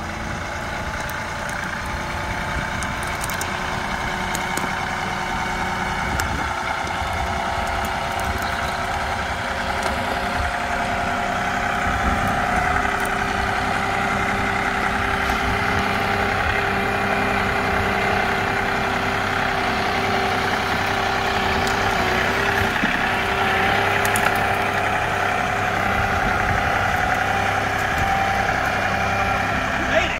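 John Deere 2038R compact tractor's three-cylinder diesel engine running at a steady, low pace. It grows louder over the first dozen seconds as it comes closer, then holds steady.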